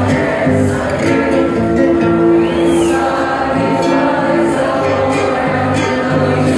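Electronic dance music played loud over a club sound system, with held, choir-like vocal chords over a pulsing bass line.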